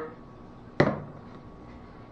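A single short knock a little under a second in: a plastic spice container of ground black pepper being set down on a kitchen countertop.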